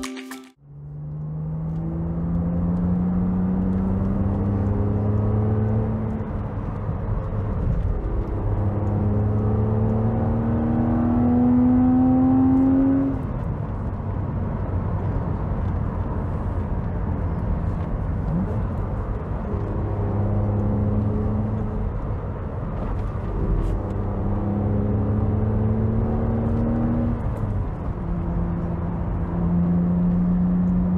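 BMW Z4 coupé's straight-six engine pulling hard along an open road. It rises in pitch in several runs broken off by gear changes, loudest near the middle, with steady tyre and wind noise in between. The sound fades in just after the start as background music cuts out.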